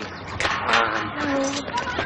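A person's voice, a short stretch of speech or an exclamation whose words are not made out, over steady outdoor background noise.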